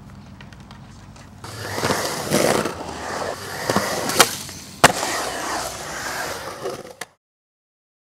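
Skateboard wheels rolling on a concrete bowl, growing loud about a second and a half in as the skater carves, with two sharp clacks a little over four seconds in and just under five seconds in. The sound cuts off suddenly near the end.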